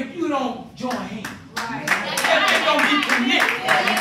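Congregation clapping in a steady rhythm with voices calling out over it. The clapping grows louder about two seconds in.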